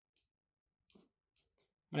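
A few short, faint computer mouse clicks, about four spread over two seconds, while the Photoshop eraser tool is used.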